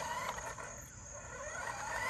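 Small electric motor of a remote-control toy car whining faintly as it drives, its pitch rising and falling.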